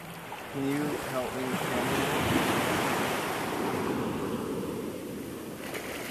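Small ocean waves washing up over shallow sand at the water's edge: one wash swells in about half a second in, is loudest around two to three seconds, then eases off.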